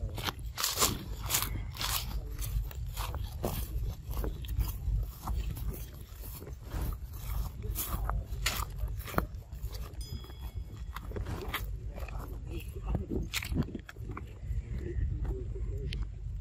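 Dry leaf litter crunching and crackling in irregular clicks, over a steady low rumble. A short high chirp comes about ten seconds in.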